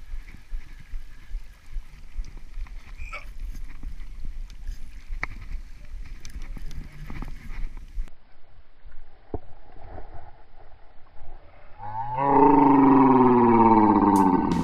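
Wind rumbling on the microphone while a spinning reel is wound, with faint clicks. Near the end a man lets out a loud, long drawn-out "Nooooo!" that falls in pitch, a cry of dismay at a lost fish.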